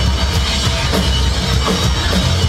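Live heavy rock band playing loudly: a driving drum kit with regular hits over bass and electric guitar.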